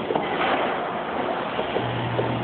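Claw machine working as its claw grips and lifts a plush toy, under a steady wash of noisy store ambience. A low hum comes in near the end.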